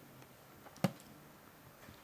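Quiet room tone with one short, sharp click a little under a second in.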